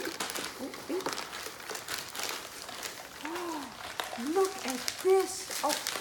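Paper and wrapping crinkling and rustling as a gift is unwrapped by hand. In the second half a woman's voice makes a few short sounds, the loudest moments.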